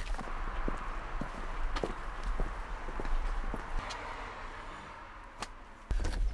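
Footsteps on a paved garden path: a series of light steps roughly half a second apart over a steady outdoor hiss, with one sharper click near the end.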